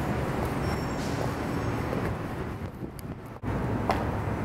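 Steady low ambient rumble, like distant traffic, with a brief break about three and a half seconds in. Right at the end comes a single sharp click of a stiletto heel on concrete.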